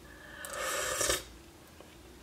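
A single breathy rush of air through the mouth, lasting under a second, as a spoonful of hot apple sauce is taken and tasted.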